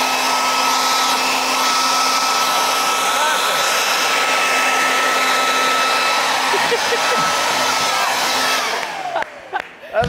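Leaf blower running flat out, a steady rush of air with a high motor whine, blowing across the top of a toilet roll so the paper is pulled off and up. About nine seconds in it is switched off and the whine falls away as the fan spins down.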